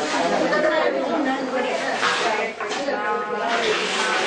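A group of people chattering and talking over one another at once, their voices echoing in a large hall.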